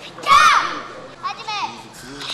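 Children's kiai shouts during a karate kata: one loud, high-pitched shout falling in pitch about a third of a second in, then a shorter, quieter shout a little over a second in.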